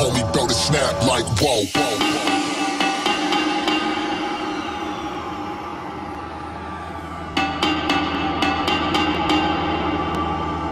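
Jungle / drum and bass DJ mix on turntables: fast scratching on the record for the first second and a half or so, then a held synth chord over bass, with the drums dropping back in about seven and a half seconds in.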